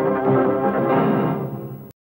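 A TV news programme's title jingle: a loud, dense passage of music that stops abruptly just before the end.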